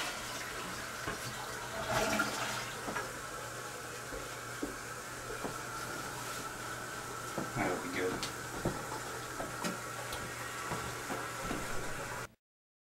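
Water running steadily in a small bathroom, a constant hiss like a toilet cistern or tap filling. A few faint knocks and short louder sounds come about two seconds in and again near eight seconds.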